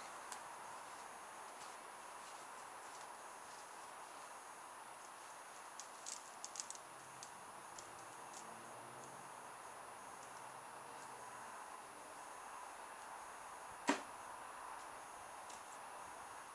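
Faint steady outdoor background with a few small handling clicks about six seconds in, then a single sharp snap about fourteen seconds in: a rubber-band-powered cardboard rocket shooting out of its cardboard launch tube as the retaining peg is pulled out.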